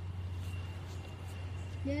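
A steady low hum runs underneath, with a faint steady high tone above it. A voice starts right at the end.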